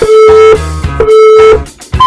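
Two short electronic countdown-timer beeps, one tone held about half a second, a second apart, over guitar background music. They count down the last seconds before an interval starts.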